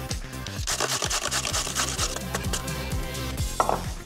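A carrot being grated on a stainless steel box grater: quick, repeated strokes, over background music.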